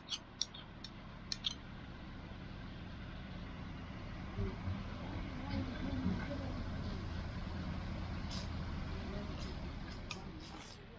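Steady low outdoor rumble with faint distant voices, and a few sharp clicks in the first second and a half.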